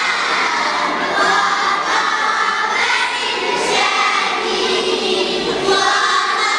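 A girls' school choir singing together through microphones, with the voices of a crowd of children mixed in.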